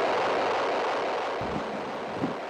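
Ocean surf: a steady rush of breaking waves that slowly fades.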